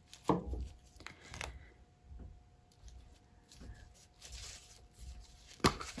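A few light knocks and clicks of paint cups and bottles being handled and set down on a table, the clearest about a third of a second in and again around a second later, with softer handling rustle between.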